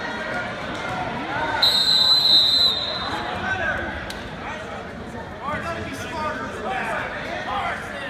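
Referee's whistle blown once, a steady high-pitched blast of about a second starting near two seconds in, stopping the action, over spectators' chatter.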